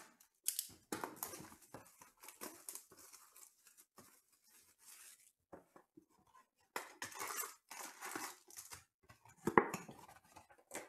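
Plastic shrink wrap being slit and torn off a cardboard trading-card box, then rustling and crinkling as the lid is opened and the foil packs are lifted out. Near the end there is a sharp thump as the packs are set down.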